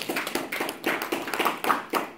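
A small audience clapping unevenly, with some laughter.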